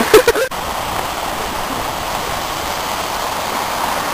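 A steady rushing noise like running water, with a short laugh in the first half second.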